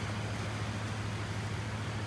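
Steady outdoor beach ambience: an even hiss of breeze and shallow water with a low, steady hum underneath, and no distinct event.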